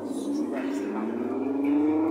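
Car engine sound effect from a Jolly Roger Silver Spyder kiddie ride's loudspeaker, revving with a slow, steady rise in pitch as the ride runs.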